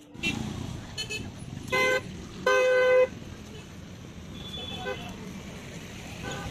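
Vehicle horns honking in queued road traffic: a short blast about two seconds in, then a longer, louder one of about half a second, over a steady low rumble of traffic.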